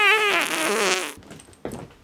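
A fart lasting about a second, its pitch wavering and falling.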